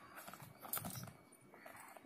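Leather shoes being handled and turned over on a woven mat by hand: a few faint, soft knocks and light rustling.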